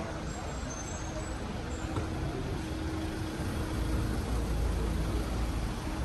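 A motor vehicle's engine running close by amid street traffic noise, its low rumble growing louder about four seconds in.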